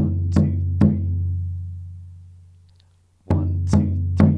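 Alfaia, a rope-tuned Brazilian maracatu bass drum, struck three times in quick succession with a wooden stick, its low boom ringing on and fading away over about three seconds. Near the end a second run of three strikes begins.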